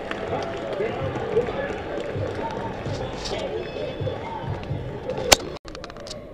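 Stadium stands ambience: indistinct chatter of nearby spectators over a general crowd murmur, with one sharp click near the end.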